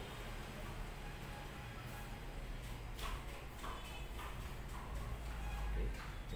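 Soft taps and knocks of hands rolling bread dough on a stainless steel worktable, a few of them about halfway through, over a steady low hum.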